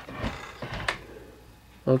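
Handling noise of a wooden deck board being turned over by hand: a soft bump about a quarter second in and a sharp click near one second.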